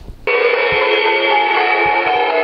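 Music from a shortwave broadcast station playing through the loudspeaker of a homebrew DDS-tuned phasing direct-conversion receiver. It starts abruptly about a quarter second in and has its treble cut off, as received radio audio does.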